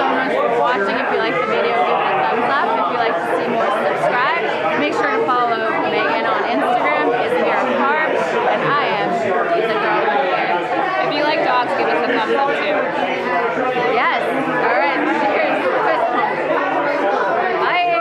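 Mostly speech: women talking close by over the steady chatter of many voices in a busy bar room.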